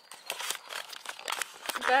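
Irregular rustling and sharp clicks, then a woman's voice starting near the end.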